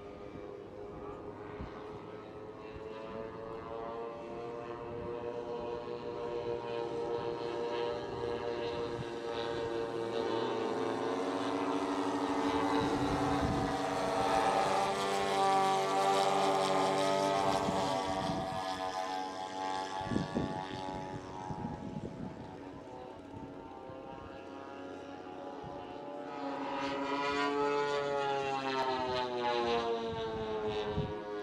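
Twin engines and propellers of a radio-controlled scale OV-1 Mohawk model plane in flight, a steady droning note that grows louder as the plane comes overhead about halfway through, drops in pitch as it passes, fades, and builds again near the end as it comes back around.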